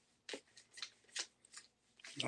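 Faint handling noise from small plastic bottles being moved in the hands: four short rustles and clicks, spaced about half a second apart.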